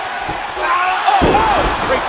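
A body slamming onto a wrestling ring's canvas in a double-team move: one heavy, booming thud about a second in, over steady arena crowd noise.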